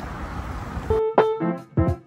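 Steady outdoor background noise, cut off abruptly about a second in by background music of piano-like keyboard notes.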